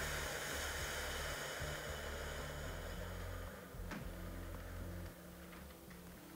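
A slow, long breath close to the microphone lasting about four seconds and fading out, taken as part of guided meditation breathing. Underneath is a low steady drone.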